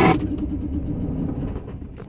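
Low engine rumble of a vehicle running nearby, easing off a little near the end, with no music over it.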